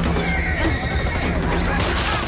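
A horse whinnying once, a high call over about the first second, over a steady low rumble.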